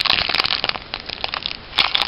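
Foil wrapper of a Pokémon booster pack crinkling and crackling in the hands as it is handled and opened, a dense run of crackles that is thickest at the start and again near the end.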